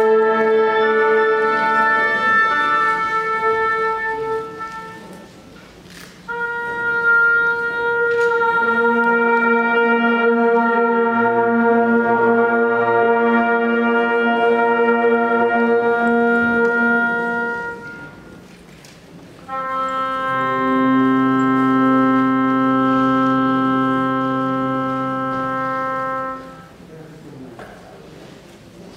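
Wind band playing long sustained chords of brass and woodwinds: three held chords of several seconds each, with short breaks between them where the sound dies away.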